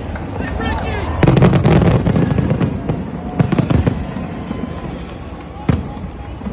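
Fireworks crackling and popping: a dense burst of crackles about a second in, scattered single pops after it, and one sharp bang near the end, with voices over them.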